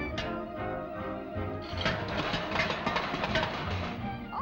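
Orchestral cartoon score, with a sharp accent just after the start and then a busy, clattering passage over a low, regular bass pulse from about halfway in.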